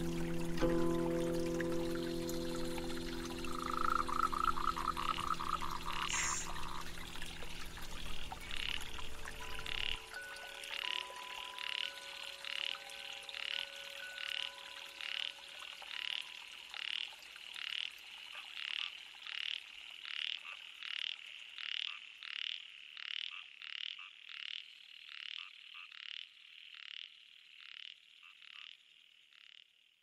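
Soft background music fades out over the first ten seconds, with a short trill about four seconds in. A calling animal, likely a frog, repeats a short high call a little faster than once a second, growing fainter until it dies away near the end.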